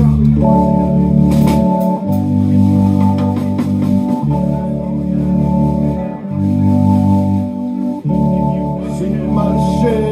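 Live band music: held, steady chords that change about every two seconds, with little drumming.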